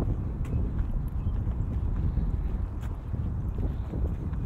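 Wind buffeting the microphone in a loud, uneven low rumble, with a few scattered sharp clicks.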